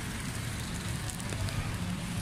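Outdoor wet-street ambience: a steady low rumble under an even, crackling hiss.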